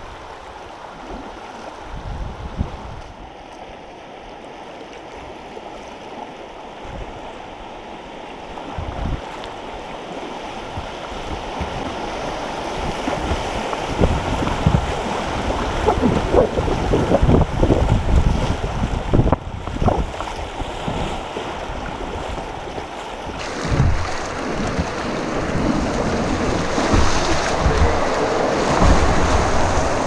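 Creek water rushing and splashing around a kayak as it drifts from riffles into whitewater, growing steadily louder. A brighter, hissing rush of breaking waves joins about two-thirds of the way through, with wind buffeting the microphone.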